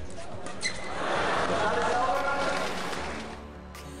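Badminton match sound: a few sharp racket hits on the shuttlecock early on, then a swell of crowd noise that rises and fades. Background music with a steady low note comes in near the end.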